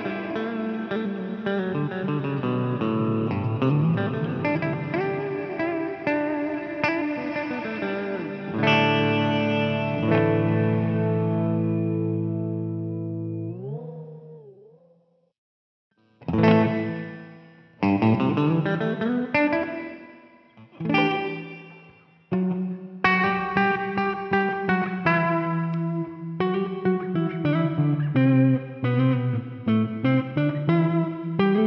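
Gibson Les Paul Standard electric guitar played through an Eventide Blackhole reverb pedal, its chords washing into long, swelling reverb tails. About halfway through, a held chord fades away while its tail warbles in pitch as a knob on the pedal is turned, then falls briefly silent. Then come a few single chord strikes that each ring out, and finally faster rhythmic picked chords.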